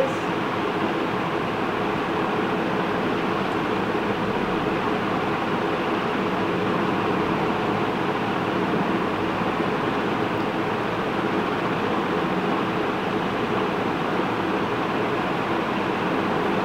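A steady hum and hiss of background noise, like a room air conditioner or fan running, even in level and with no sudden sounds.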